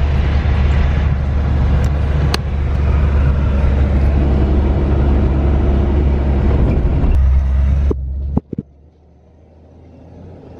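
A 4x4 driven along a bumpy sand track, heard from inside the cabin: a steady, loud low rumble of engine and tyres with an occasional knock. The rumble drops off suddenly about eight seconds in, leaving a much quieter sound that slowly builds again.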